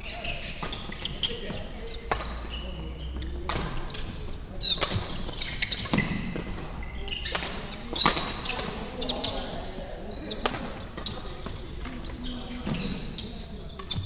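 Badminton rally in a sports hall: rackets striking the shuttlecock in sharp, irregular cracks and players' shoes squeaking on the wooden court floor, with the loudest hits about a second in and again around the middle of the rally. Voices carry in the background.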